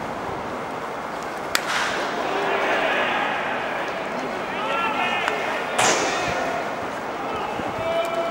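Two sharp cracks of a baseball striking, about four seconds apart, the second louder, over ballpark background noise with spectators' voices calling out between them.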